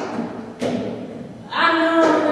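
Two dull thuds about half a second apart, then a voice comes in about one and a half seconds in, singing a long held note.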